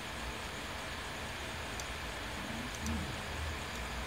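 Quiet room tone: a steady low hiss with a faint hum, and a faint brief pitched sound about three seconds in.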